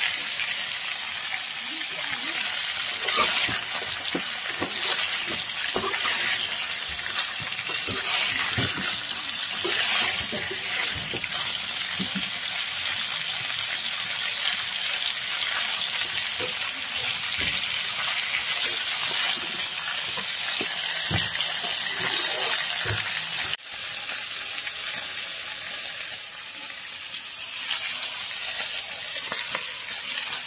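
Pork and potato pieces frying in oil in a turmeric curry base, a steady sizzle with scattered scrapes and knocks of a spoon stirring them in the pan.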